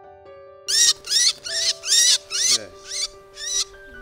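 A black songbird held in the hand calls loudly, giving about seven harsh calls roughly two a second, each rising then falling in pitch. The calls start about a second in and grow fainter near the end. Soft piano music runs underneath.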